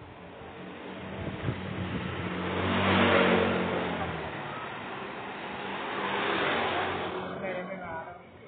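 Motorcycles passing along the road, one after another. The first pass is the loudest, about three seconds in, and a second passes a few seconds later.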